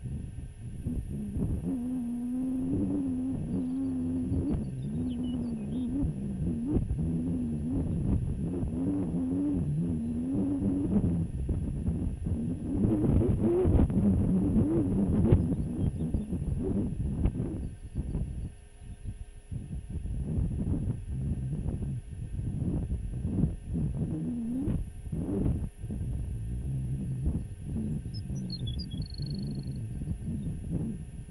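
Wind rumbling and buffeting on an outdoor microphone, with a low wavering moan that rises and falls. A few faint high chirps near the end.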